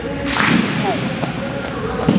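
Two wrestlers scuffling on a foam wrestling mat during an arm drag: a sharp slap about half a second in and a thud at the end as the partner is pulled down onto his hands.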